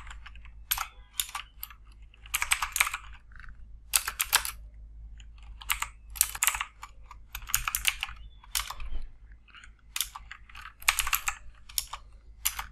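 Typing on a computer keyboard: quick runs of keystrokes in bursts with short pauses between, as lines of code are entered.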